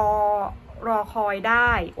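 A woman speaking Thai in a steady narrating voice: speech only.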